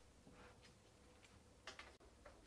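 Near silence: room tone in a pause of a talk, with a few faint clicks, the clearest one near the end.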